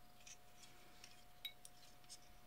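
Faint small clicks as the relay shield's pins and circuit board are pressed onto an Arduino's header sockets by hand. The sharpest click comes about one and a half seconds in. A faint steady whine runs underneath.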